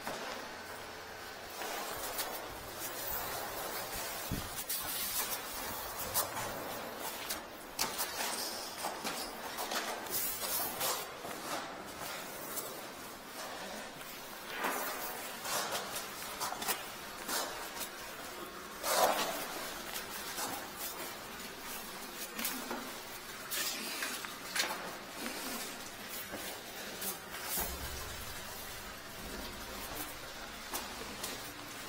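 Irregular knocks, clatters and scrapes of hands and gear being moved about in a concrete sump pit, with the strongest knock about 19 seconds in.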